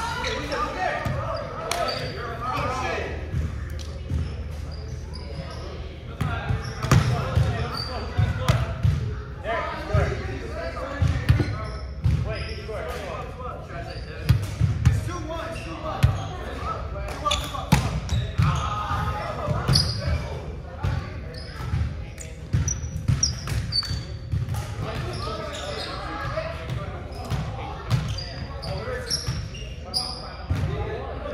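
Indoor volleyball being played on a hardwood gym court: sharp slaps of the ball being hit and thuds as it bounces, repeated through the rallies, with players' indistinct voices calling out, all echoing in the large hall.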